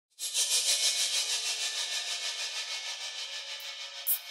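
Hissing electronic noise from the opening of a minimal-techno track. It starts suddenly, flutters about six times a second and slowly fades.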